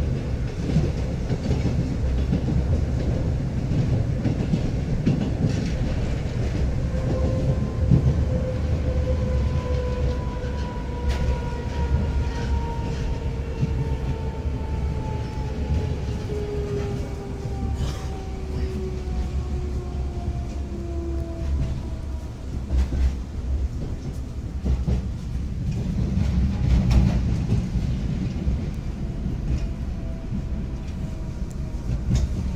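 An 81-740/741 Rusich metro train, heard from inside the car: a steady low rumble of wheels on rail with occasional clicks over rail joints. From about seven seconds in to about twenty-two, the traction motor whine falls slowly in pitch as the train slows. The rumble swells briefly near the end.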